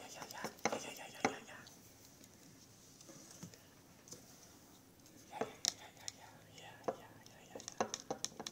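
A soft spoken "yeah" at the start, then a quiet room broken by a few light clicks and knocks of handling in the second half.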